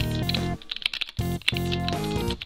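Computer keyboard typing, a quick run of key clicks, over background music that drops out for about half a second in the middle.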